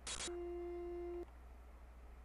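Raw Vocaloid .DDB voicebank data played back in Audacity as 32-bit PCM audio: a brief burst of hiss, then a steady low beep lasting about a second that cuts off suddenly.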